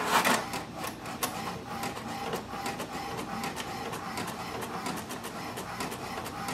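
HP DeskJet 4220e inkjet printer starting a print job. There is a loud mechanical clatter right at the start, then a steady run of clicking from the paper feed and print mechanism.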